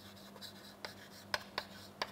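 Chalk writing on a chalkboard: faint scratches and several sharp little taps as the letters are formed.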